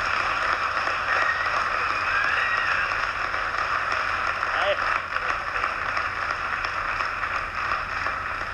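Studio audience applauding steadily, a dense even clapping that welcomes a guest onto a television talk show.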